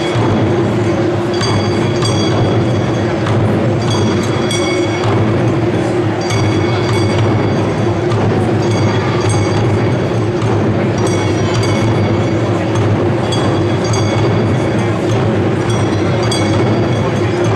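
Japanese taiko ensemble beating barrel drums with wooden sticks in a continuous, loud, driving rhythm. A bright metallic clink recurs every two to three seconds over the drumming.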